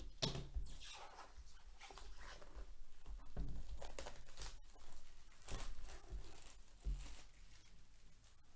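Plastic shrink-wrap being torn and crinkled off a trading-card box, in a string of irregular rustling bursts, with the cardboard box being handled.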